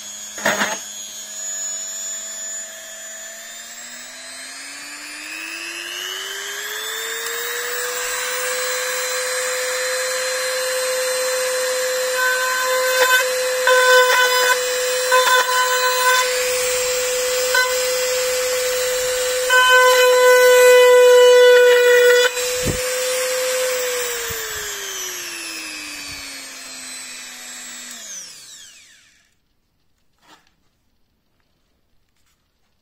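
A 130 W rotary multi-tool running with a steady whine. Its pitch climbs over several seconds as it speeds up, then holds while its small drill bit bores into a board, with repeated louder stretches as it cuts. Near the end the pitch sinks as the motor slows and stops.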